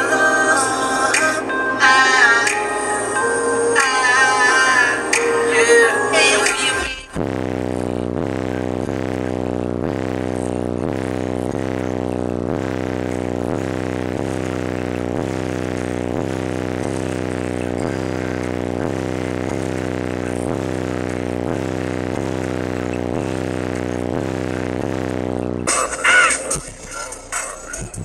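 Bass-heavy music played loud through two custom 12-inch Sundown Audio ZV3 subwoofers on a Sundown SAZ-2500 amplifier wired at half an ohm. About seven seconds in, the song with vocals cuts to a steady, evenly repeating bass pattern, and busier music returns near the end.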